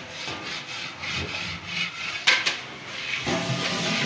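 Clattering and scraping of aluminium cooking pots and utensils, irregular, with a sharp metallic knock a little over two seconds in.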